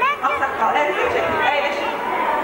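A girl speaking into a microphone in a stage dialogue, with chatter from others in the room behind.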